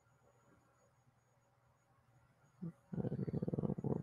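Near silence, then in the last second a low buzz starts, pulsing rapidly.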